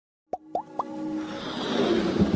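Animated logo intro sound effects: three quick rising pops about a quarter second apart, then a swelling whoosh over held musical tones, building up toward the end.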